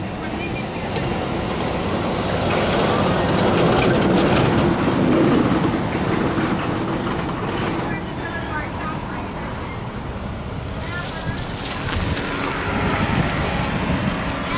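Low, noisy rumble of a passing heavy vehicle, swelling to its loudest about four to five seconds in and then fading, with a faint high squeal while it is loudest.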